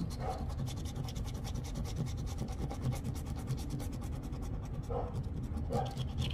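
A coin scratching the latex coating off a scratch-off lottery ticket in quick, repeated strokes.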